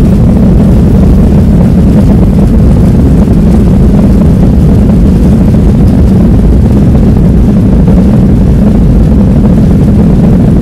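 Cabin noise of a Southwest Boeing 737 on its takeoff roll: the jet engines at takeoff power and the rumble of the runway, heard from a window seat over the wing as one steady, loud, deep roar.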